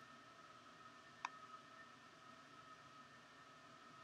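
Near silence: faint room tone with a steady high hum, and a single computer mouse click about a second in.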